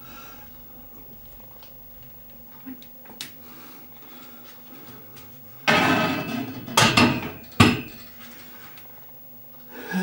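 Loaded barbell knocking against the steel uprights of a squat rack. There is a loud, rough burst about six seconds in, then two sharp metallic clanks less than a second apart.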